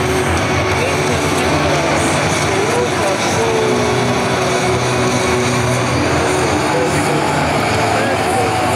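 Football stadium crowd cheering and singing, loud and steady, with many voices over one another, celebrating the home team's goal.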